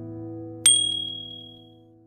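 A single bright bell 'ding' sound effect from the subscribe-button notification-bell animation, striking just over half a second in and ringing out over about a second, over soft piano background music that is fading away.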